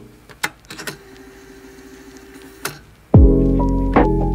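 Piano background music: a quiet held note with a few sharp clicks, such as a metal whisk tapping a bowl. Loud piano chords come in about three seconds in.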